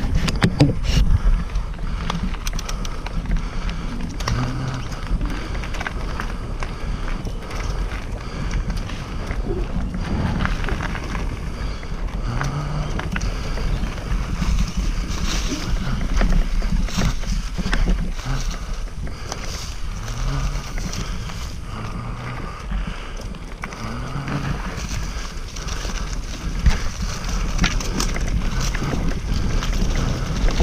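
Mountain bike ridden along a dirt singletrack: wind rumbling on the microphone, tyres rolling over dirt and leaf litter, and the bike knocking and rattling over bumps throughout.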